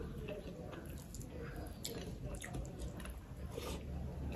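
Person chewing a mouthful of rice and curry, heard as faint, scattered wet clicks and smacks.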